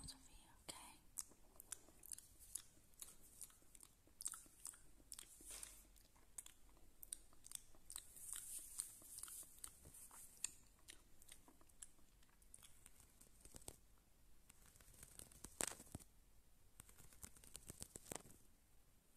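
Soft, close-miked ASMR trigger sounds: scattered small clicks and crackles, with a brief patch of hiss in the middle and one louder click about two-thirds of the way through.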